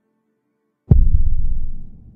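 A single sudden, very loud, deep boom about a second in, whose low rumble dies away over the next second: an explosion sound effect standing for a nuclear warhead detonation.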